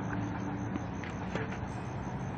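Steady low hum of outdoor background noise, with a couple of faint knocks.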